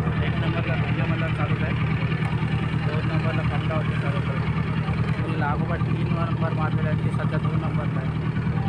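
Motorboat engine running steadily at an even pitch, with faint voices of people talking over it.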